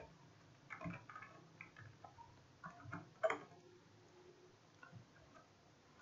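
Faint, irregular keystrokes on a computer keyboard, with a few louder clicks among them.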